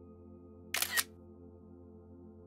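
iPad camera shutter sound, a short double click about three-quarters of a second in, as a photo is taken, over soft ambient background music.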